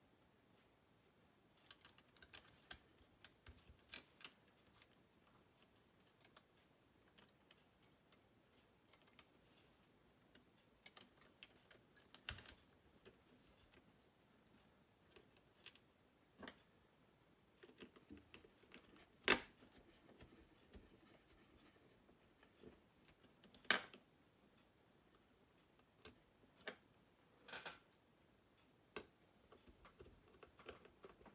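Scattered small clicks and taps of plastic and circuit-board parts being handled and pressed together as a Sharp PC-1251 pocket computer is reassembled, with two sharper knocks in the second half.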